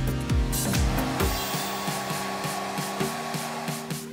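Hot-air rework station blowing a steady hiss that starts about a second in and cuts off near the end, reflowing freshly placed solder balls to fix them onto a reballed BGA chip. Background music with a bass line plays throughout.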